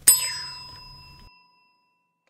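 A single bright bell ding, the sound effect for a subscribe animation's notification bell being clicked. It rings out with a clear tone that fades away over about a second.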